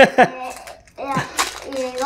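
A man's short 'ah', then wordless voice sounds, over the crinkle of a foil Pokémon booster pack being torn open.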